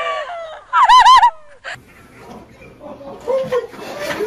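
Rooster calling loudly in a quick, wavering run of high cries that rise and fall four times, about a second in. A short click follows, then quieter outdoor noise.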